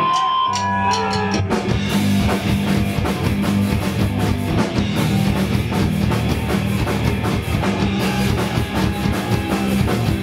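Live punk rock band of electric bass, electric guitar and drum kit launching into a song. A few held notes come first, the bass comes in about half a second in, and the full band with drums and cymbals kicks in about a second and a half in, then plays on loud and driving.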